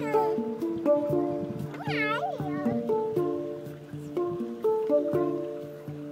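Handpan (steel hang-style drum) played with the fingers: a flowing run of struck, ringing notes that overlap and sustain. About two seconds in, a brief wavering voice-like cry sounds over it.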